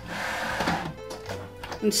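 Plastic cutting mats and die sliding and scraping across the plastic feed platform of a manual die-cutting machine as they are pushed into it, loudest for about the first second.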